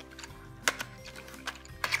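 Background music with steady sustained notes, over which a cardboard colored-pencil box is opened by its tuck flap, giving two sharp clicks: one under a second in and a louder one near the end.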